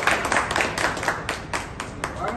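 People clapping their hands: a quick, uneven run of claps that thins out and gets quieter toward the end.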